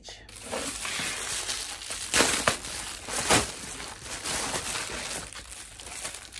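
Plastic packaging crinkling and rustling as a package is unwrapped by hand, with two sharp rips about two and three seconds in.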